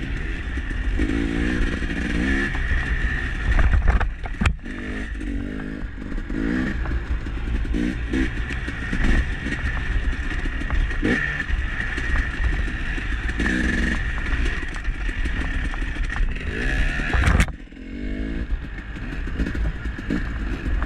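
Dirt bike engine running and revving up and down as it is ridden, with two sharp knocks, one about four seconds in and one near the end.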